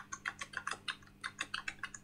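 Computer keyboard typing: a fast, uneven run of short key clicks, about seven a second.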